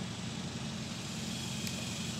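Steady low mechanical hum of a running motor or engine, holding an even pitch throughout.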